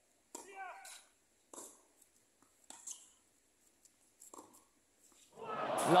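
Tennis ball struck by rackets in a short rally: the serve about a third of a second in, then three more hits at about one-second intervals, the later ones fainter, with a short vocal sound just after the serve.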